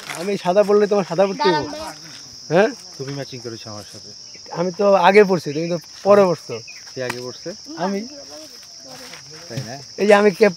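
A steady high-pitched drone of insects, with men's voices talking loudly over it.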